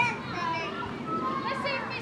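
Children's voices chattering and calling out, several overlapping.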